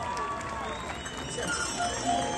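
Indistinct crowd voices and chatter in a lull in the mariachi music, with a few faint held tones still sounding above them.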